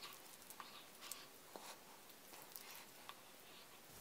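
Near silence, with a few faint soft ticks from a mousse-textured face mask being spread over the skin with the fingertips.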